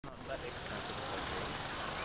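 Steady outdoor background noise with faint, indistinct voices in the distance.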